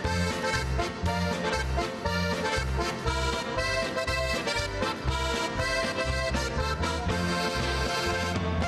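Button box (diatonic button accordion) playing a lively polka tune, with the band's bass keeping a steady beat underneath.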